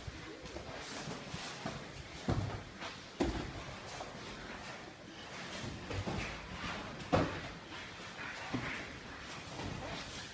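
Jiu-jitsu sparring on foam mats: bodies and limbs thudding on the mat amid the scuffle and rustle of cotton gis, with a few sharper thuds, the loudest about seven seconds in.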